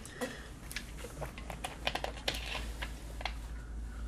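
A run of light, irregular clicks and taps, a dozen or more over four seconds, from small objects being handled close to the microphone, over a steady low hum.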